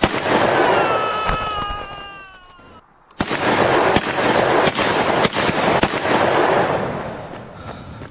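Gunfire sound effect: a sudden blast with falling whistling tones that dies away over about three seconds, then, after a brief gap, a volley of several sharp shots with crackling that fades out near the end.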